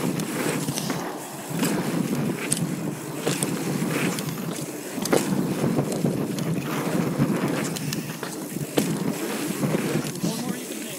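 Wind buffeting a helmet or handlebar camera's microphone as a Yeti SB4.5 mountain bike rides fast through dirt jumps, over the rumble of its knobby tyres on packed dirt. Short sharp clicks and rattles from the bike are scattered throughout.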